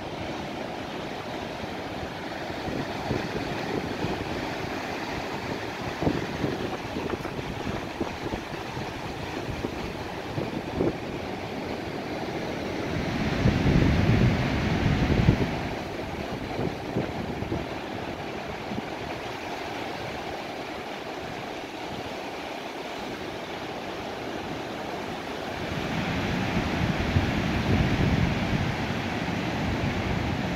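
Surf breaking and washing up a sandy beach, with wind buffeting the microphone. The surf swells louder twice, about halfway through and again near the end.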